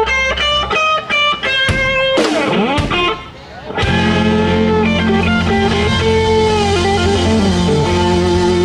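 Live country band playing a song's closing instrumental. An electric guitar plays a quick run of single notes and bends, drops out briefly about three seconds in, and then the full band with bass comes back in under a held, sliding lead line.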